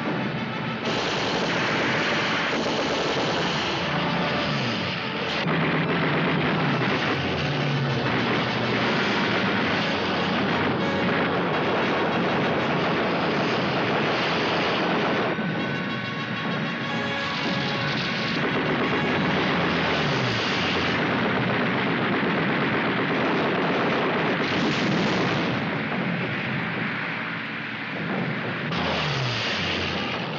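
War-film battle soundtrack: dramatic music over the drone of low-flying aircraft engines, with flak bursts and gunfire breaking through.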